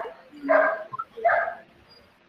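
A dog barking three times in quick succession, about two-thirds of a second apart.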